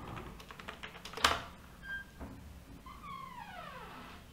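Computer keyboard keys clicking faintly, with one sharper, louder click about a second in. Near the end a short sound falls in pitch.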